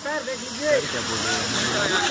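Indistinct, overlapping voices of several people talking and calling, over a steady hiss.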